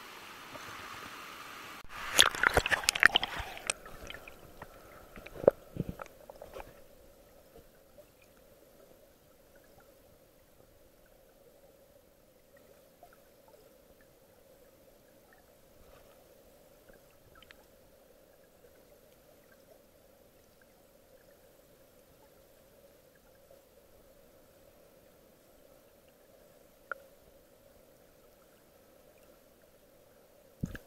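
Loud splashing and knocking for a few seconds as a camera goes under a river's surface, then faint muffled underwater sound of the flowing stream: a low steady hum with occasional soft clicks and one sharp tick near the end.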